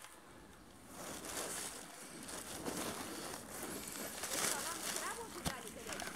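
Rustling of low shrubs and ferns with footsteps as someone walks through forest undergrowth, quiet for the first second and then louder and uneven.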